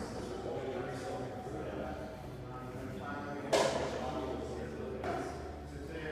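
Indistinct voices in a gym, with one sharp thud about three and a half seconds in.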